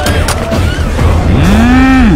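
A man's long, loud bellowing yell that rises in pitch, holds, and falls away at the end, over a steady low rumble from the action-film soundtrack.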